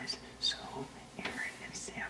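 Quiet whispering voice.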